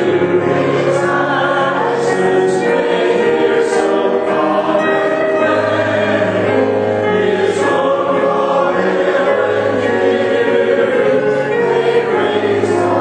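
A congregation singing a hymn together, with piano accompaniment, in slow, steady sustained notes.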